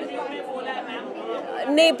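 Reporters' voices talking over one another in indistinct chatter. A woman starts to answer near the end.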